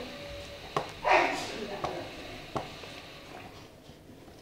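Hands working in a plastic basin of water, with a few small knocks and splashes against the plastic, and a short burst of a boy's voice about a second in.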